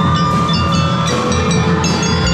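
Drum and lyre band playing: mallet instruments ring a melody in bright, sustained high notes over a steady beat of marching drums.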